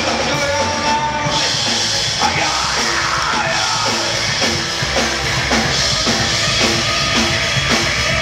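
Punk rock band playing live: electric guitar, bass guitar and drum kit, loud and dense, settling into a steady beat of about two strokes a second after the first couple of seconds.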